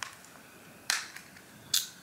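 Small plastic containers of colored contact lenses being handled: three short, sharp clicks, at the start, about a second in and near the end, with quiet between.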